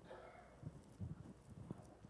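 Near silence in a large hall, broken by a few faint, irregular low thumps in the second half.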